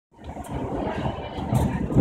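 Renfe Civia electric commuter train running along the track, heard from inside the carriage: a steady low rumble with a few sharp clicks.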